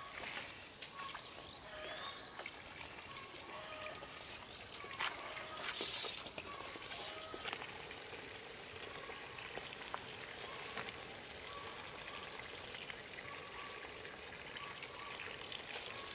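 Outdoor forest ambience: a steady high hiss with short, repeated calls from an animal. There is a brief scuff about six seconds in.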